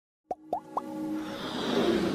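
Three quick plops, each rising in pitch, about a quarter second apart, followed by a swell that builds steadily louder: the sound effects and music of an animated logo intro.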